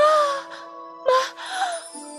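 A young woman's voice crying out in shock: a rising cry at the start, then a shorter cry about a second in. Held notes of background music run beneath.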